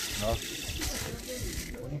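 A man says a short word, then a steady, even outdoor background hiss with faint voices.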